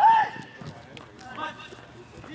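A man's loud shout right at the start, then another call about a second and a half in, over the quick footsteps of players running on the court.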